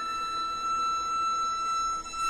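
Dizi (Chinese bamboo transverse flute) holding one long, steady high note, softly, with little else under it.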